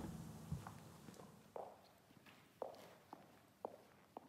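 Footsteps on a hard floor walking away, about one step a second, growing fainter.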